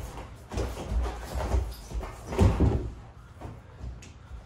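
Feet stepping and scuffing on foam wrestling mats and bodies thudding onto the mat as two wrestlers drill a takedown, a series of dull thumps with the heaviest about two and a half seconds in.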